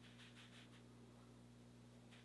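Near silence: a steady low hum, with a few faint, quick swishes of a makeup brush over skin in the first second.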